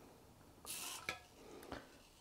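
Mostly quiet, with a brief faint scrape about two-thirds of a second in, a light click just after, and a softer scrape and click near the end.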